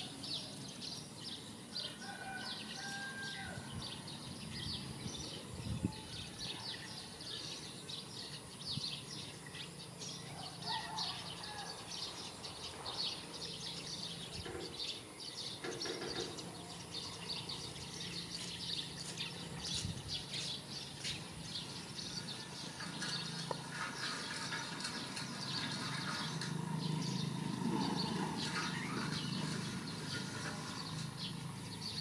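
Outdoor ambience of birds chirping in quick, repeated calls, over a faint steady low hum.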